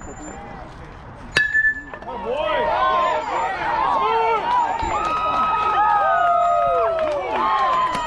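Metal baseball bat hitting a pitched ball with a sharp, ringing ping about a second and a half in. Right after it comes a burst of many voices shouting and cheering that runs on to the end.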